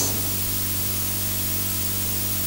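Steady hiss with a low electrical hum underneath, the background noise of the sound system or recording.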